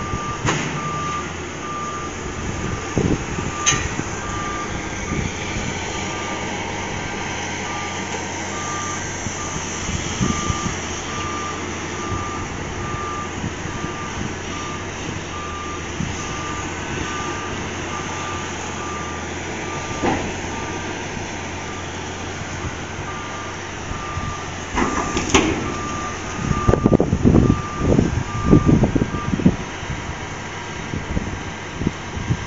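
Liebherr 944 crawler excavator running, its warning alarm beeping steadily over the engine, with occasional knocks. Near the end come a run of loud, irregular crashes and crunches as the machine works at the steel silo's base.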